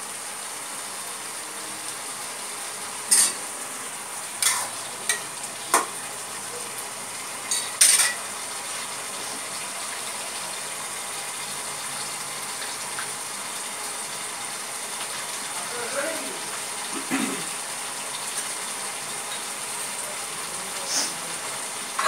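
Chicken gravy in a non-stick kadai on a gas stove, bubbling and sizzling steadily on high flame as the chicken boils in it. Several sharp clicks come in the first eight seconds.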